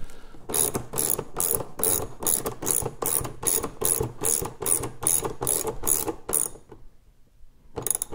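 Hand ratchet clicking in a steady run of about three clicks a second as it drives a screw into the plastic hood, stopping about six and a half seconds in.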